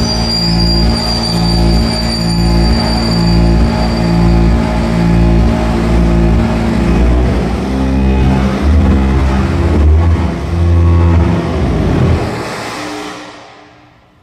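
Live electronic noise music: a loud, dense drone of stacked tones that pulse in even segments over a deep bass. A heavier low tone swells near the end, then everything fades out over the last couple of seconds.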